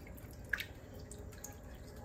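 Faint wet stirring of a liquid mix of broth, milk and cream of mushroom soup in a crock pot, with small drips and light clicks of the spoon; the most distinct click comes about half a second in.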